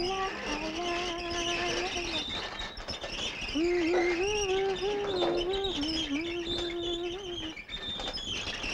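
A boy's voice singing a wordless tune in long held notes, in two phrases with a short pause between them.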